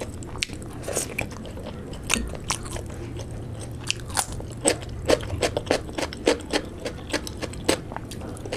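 Close-miked chewing of soft fried luchi with curry, then crisp biting and crunching of raw cucumber from about halfway through, at roughly three crunches a second.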